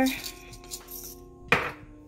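Hand pepper grinder being twisted over a pot of soup, a short rasping grind of black peppercorns, then a sharp knock about a second and a half in. Background music plays throughout.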